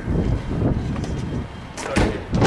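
A vehicle engine idling with a steady low rumble, and a short sharp knock near the end.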